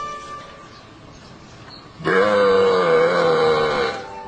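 A single long, low moo-like call starts about halfway through and holds a steady pitch, with a slight waver, for nearly two seconds.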